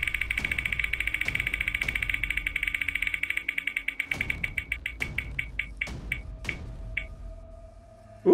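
Spinning prize-wheel sound effect: the wheel's clicker ticks rapidly, about ten ticks a second, then slows steadily to single ticks about a second apart and stops as the wheel comes to rest.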